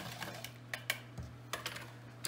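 Wire whisk clicking against the sides of a plastic measuring cup as a seasoning slurry is stirred: a few sharp, irregular ticks over a faint steady hum.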